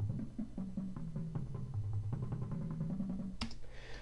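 Virtual Drumline sampled marching bass drum line playing back from notation: a fast run of sixteenth-note strokes stepping up and down across the tuned bass drums. Partway through it switches from soft puffy mallets to regular natural mallets.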